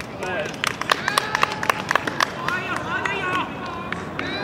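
High-pitched voices shouting short calls on a rugby field, with a quick, irregular run of sharp hand claps in the first half.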